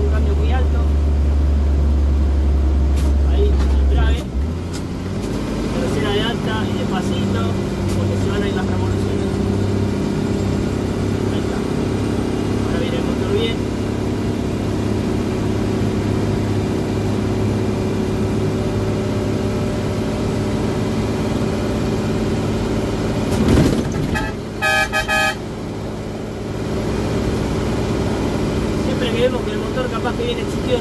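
Mercedes-Benz truck's diesel engine pulling steadily up a grade in fourth gear high range, heard from inside the cab; a deep drone in the first four seconds gives way to a lighter, even note. Near the end a horn sounds in a few short toots.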